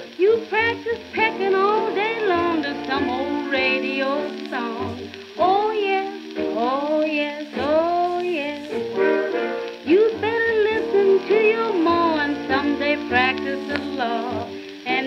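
Late-1930s swing dance-band recording playing from a 78 rpm shellac record: pitched lines with bent notes over a steady rhythm section, with the disc's surface crackle and hiss running underneath. The sound is narrow and thin at the top, as old recordings are.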